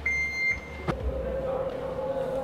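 Xiaomi SU7's power trunk lid closing: a single high warning beep lasting about half a second, a click just before the middle, then the steady hum of the lid's electric motor as it starts to lower.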